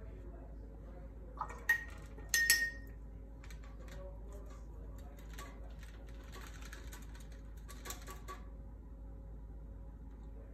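A few sharp clinks of a paintbrush against a container, two of them ringing briefly, followed by several seconds of soft, scratchy brushing as the brush is worked into the pans of a watercolour paint tin.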